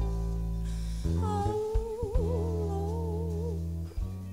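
Slow blues band music: sustained bass and guitar chords, with a long held melody note in wide vibrato that comes in about a second in and ends near the close.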